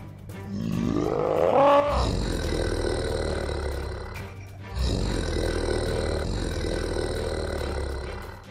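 Giant-monster roar sound effects over background music: one roar rises in pitch through the first two seconds, then two long, loud roars follow with a deep rumble under them, the second starting a little past halfway.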